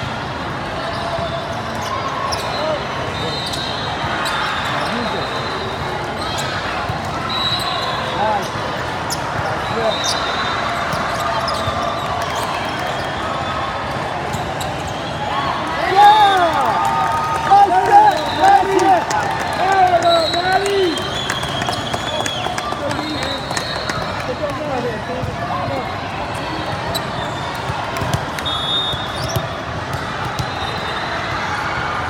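Gym sound of an indoor volleyball match: spectators chattering, short high squeaks and sharp ball hits through the rally. Loud shouting and cheering break out for about five seconds in the middle.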